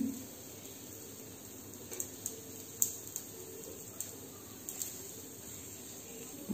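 A knife cutting a sheet of set khandvi batter, with about half a dozen faint, irregular clicks of the blade against the plate beneath, over a low room hiss.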